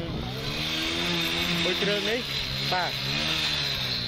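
A motor vehicle engine running close by on the road, its hum rising and then falling gently in pitch as it goes past, with voices talking over it.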